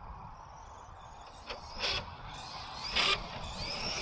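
Losi LST 3XLE brushless RC monster truck running on grass, with short rasping scuffs about two seconds in and again about three seconds in: the body rubbing on its big tyres. A low steady rumble runs underneath.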